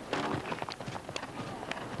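A show jumper's hooves beating on turf as it lands over a fence and canters on, a few separate hoofbeats. A faint voice is heard briefly near the start.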